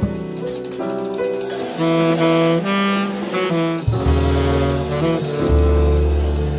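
Modern jazz quartet recording: a saxophone plays a moving melodic line over the rhythm section, with strong low bass notes in the second half.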